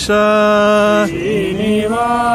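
A man singing a devotional song unaccompanied. He holds one long steady note for about a second, then drops to a lower, wavering note and comes back up to a held note near the end.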